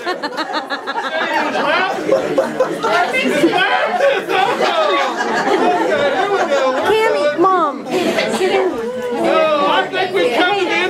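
A room full of people talking over one another, with a laugh right at the start.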